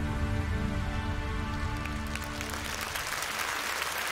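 A live orchestra holds its final chord, which dies away over the first few seconds. Audience applause starts about two seconds in and swells as the music fades.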